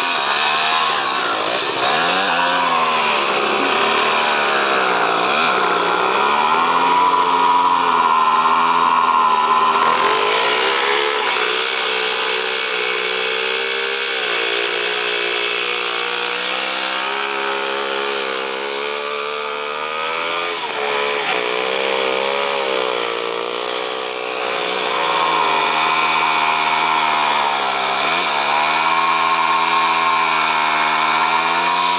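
Small two-stroke engines of a WSK motorcycle and a Komar moped revving hard, their rear wheels spinning and digging into loose sand. The revs dip and climb again several times as the wheels bog down and break free.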